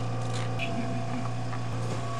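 Steady low electrical hum, with a few faint rustles about half a second in.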